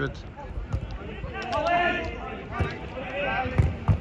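Football being kicked on an artificial-turf pitch, a few sharp thuds with a harder one near the end, while players shout to each other.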